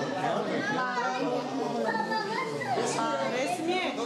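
Overlapping chatter of a group of people, adults and at least one child, talking at once as they greet one another.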